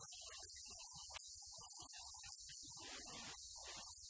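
Faint low hum, with scattered faint indistinct sounds over it: room tone.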